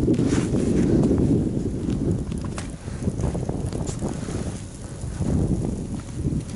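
Wind buffeting the microphone as a low, uneven rumble. It is strongest in the first second and a half, then eases and comes and goes.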